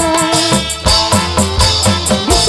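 Dangdut band playing an instrumental passage, with held melody notes over a steady drum beat and quick, regular high ticking from a shaker or hi-hat.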